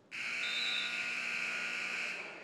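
Gym scoreboard buzzer sounding the end of a wrestling period: one loud, steady electronic buzz that starts suddenly and holds for about two seconds.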